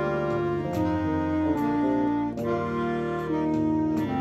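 A school wind band of saxophones, clarinets, flute and brass, with tuba on the bass line, playing held chords that change about once a second.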